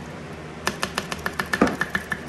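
Rapid run of sharp clicks from a kitchen utensil tapped against the rim of a slow cooker crock, about six or seven a second, starting a little under a second in, with one heavier knock midway.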